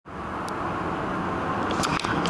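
A steady outdoor rumble of noise that swells slightly, with a couple of faint clicks.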